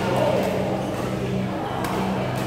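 Busy indoor badminton hall: background chatter of players over a steady low hum, with one sharp racket-on-shuttlecock hit near the end.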